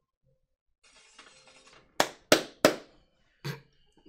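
Animated sound effects of weapons being dropped: a faint rustle, then three sharp clanks in quick succession and a fourth, weaker one a moment later, each with a short ring.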